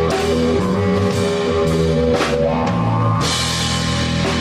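A rock band playing live: electric guitar, bass guitar and drum kit. There is a sharp drum hit a little over two seconds in, and brighter cymbals from about three seconds in.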